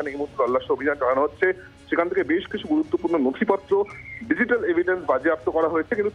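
Speech only: a man talking continuously in Bengali over a telephone line, sounding narrow and thin, with a low background music bed underneath.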